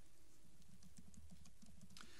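Quiet meeting-room tone with faint, irregular soft clicks and taps.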